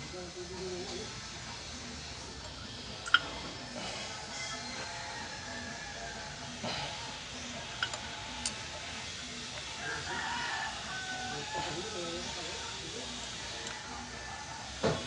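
Light metal clicks and taps of hand work on a diesel injection pump's mounting, the sharpest about three seconds in, over a steady background with faint distant voices. A drawn-out pitched call comes in the background around ten seconds in.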